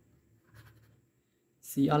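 A pause in a man's narration: near silence with faint room tone, and his voice returns near the end.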